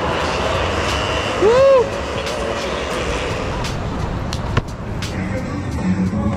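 Rental kart's two-stroke Rotax engine running as the kart passes on track. A short tone rises and falls about a second and a half in and is the loudest sound, followed by a sharp click later on.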